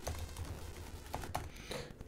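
A few scattered keystrokes on a computer keyboard, quiet separate clicks spread across the moment.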